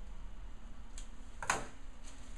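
Thin kite paper being handled on a table: a faint tick about a second in and a sharper crackle about a second and a half in, over a steady room hum.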